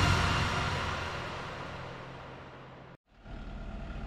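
Background music fading out, then an abrupt cut about three seconds in to an excavator engine running steadily at a low hum.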